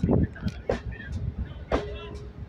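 Passenger coaches rolling slowly along the platform track while the train is pushed in reverse, with a low rumble and a few separate knocks from the wheels on the rails. A short held tone comes near the end.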